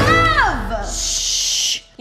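A woman singing the word "love" on a long note that slides down in pitch over backing music, followed by about a second of steady hiss that cuts off suddenly near the end.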